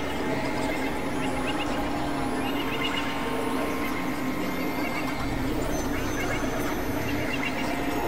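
Experimental electronic drones and noise from synthesizers: a dense, steady bed of held tones with short squawky chirps scattered over it in clusters.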